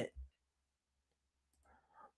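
Near silence in a small room after a man's voice stops, with a faint low thump just after the start and a short faint hiss near the end.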